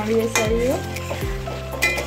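A metal spatula stirring egg korma gravy in an aluminium kadai over the sizzle of the simmering masala. It clinks and scrapes against the pan twice, about half a second in and near the end.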